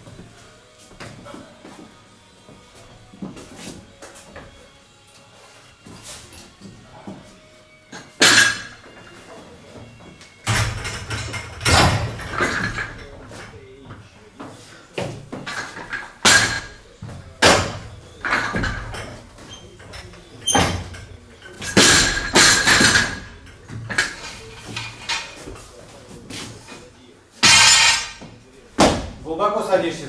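Barbells and weight plates clanking and knocking in a weightlifting gym: about ten loud metallic impacts, some with a short ringing. They start about eight seconds in, after a quieter stretch of small knocks.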